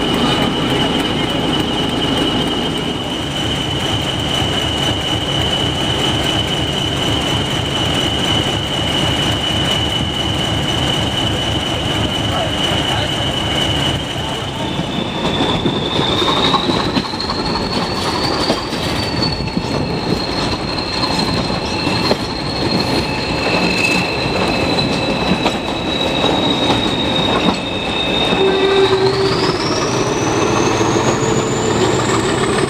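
Railway coach wheels squealing on a curve: one long, high, steady squeal that steps up in pitch about halfway through and climbs sharply near the end. Under it is the constant rumble and rattle of the moving coach on the track.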